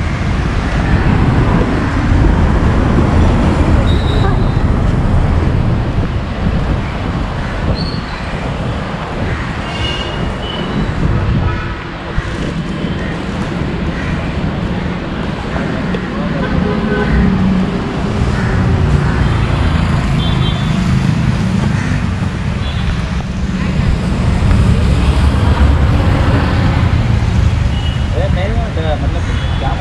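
City street traffic: a steady rumble of passing vehicles, with a few brief horn toots.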